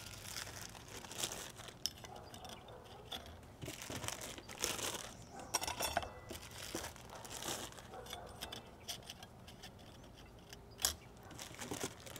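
Faint crinkling of plastic parts bags and light metal clinks of clutch plates being set into a transfer case clutch pack, in scattered handling noises, with one sharper click near the end.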